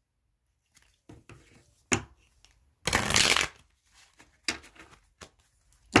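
A deck of Animal Spirit oracle cards being taken out and handled: scattered soft clicks and taps, with one longer rustle of the cards about three seconds in.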